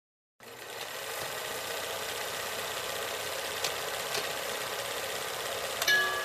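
Film projector running: a steady mechanical whir and clatter that starts suddenly about half a second in, with a few sharp clicks, and a short tone near the end.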